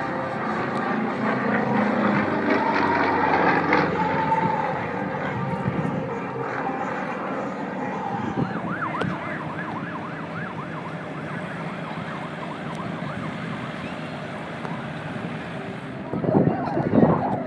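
Propeller airplane engine running, its pitch wavering up and down. It is loudest in the first few seconds, then eases off.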